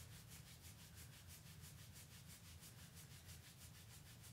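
Faint rubbing of knuckles digging into the back of the hips through clothing, a fast, even scratching rhythm of several strokes a second, over a low steady hum.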